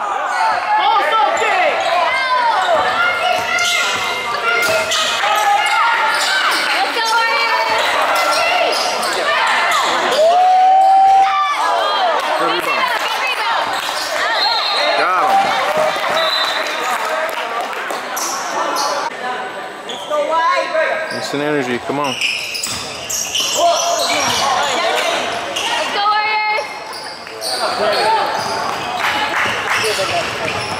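A basketball dribbling, and sneakers squeaking on a hardwood gym floor during play, with shouting voices ringing in a large gym.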